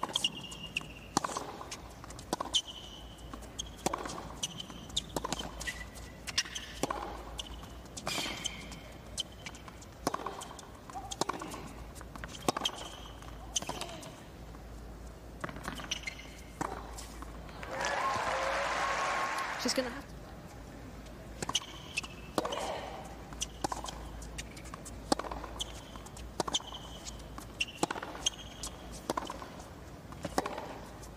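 Tennis rallies on a hard court: sharp racket strikes on the ball and bounces, with shoe squeaks and players' grunts. A short burst of crowd applause and cheering comes about eighteen seconds in, between two points.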